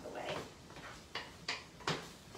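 Three quick, sharp knocks of a cooking utensil against the pan of browning sausage, spread over under a second in the second half.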